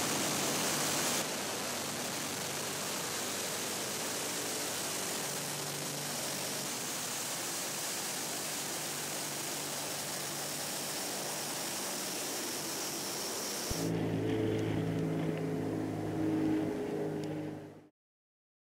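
Tupolev Tu-95's four NK-12 turboprops with contra-rotating propellers, a loud steady roar as the bomber takes off and climbs away. After a change about fourteen seconds in, the sound becomes a lower drone of several steady tones, then fades out just before the end.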